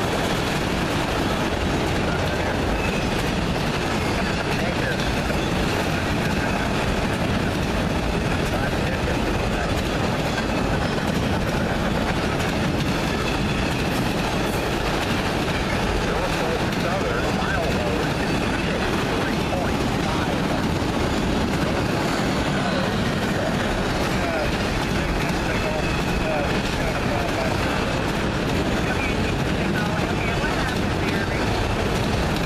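Enclosed autorack freight cars rolling past close by: a steady, unbroken rumble of steel wheels on the rails.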